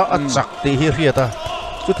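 Man commenting rapidly over a boxing bout, with a few dull thuds from the ring underneath.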